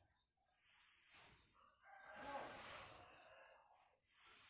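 A rooster crowing faintly, one long call from about two seconds in, over soft rushing noises that swell and fade about once a second.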